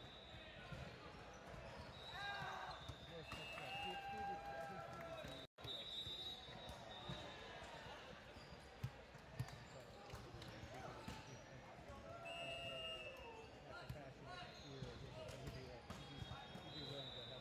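Voices chattering in a large gym, with scattered short high squeaks of sneakers on the hardwood court and two sharp thuds about nine seconds in.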